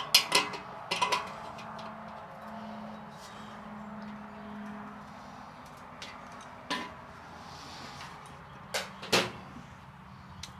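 Clanks and clicks of metal parts being handled and fitted while a kettle grill's metal lid is assembled. There is a cluster of sharp knocks at the start, then a few more spread through the second half.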